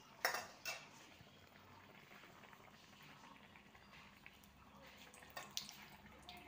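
A metal slotted spoon clinks twice against a cast-iron kadai, with faint sizzling of oil deep-frying a ball of dough. A couple more metal clinks come near the end.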